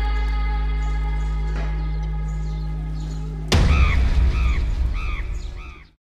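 Trailer sound design: a sustained music drone that cuts off about three and a half seconds in on a sudden boom hit, followed by a run of crow caws that fade out.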